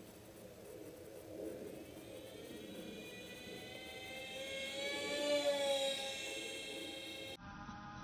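Twin propellers of a radio-controlled Sukhoi Su-37 foam model plane whining in flight, rising in pitch and loudness to a peak about five seconds in, then dropping a little in pitch. An edit near the end switches abruptly to a steadier whine.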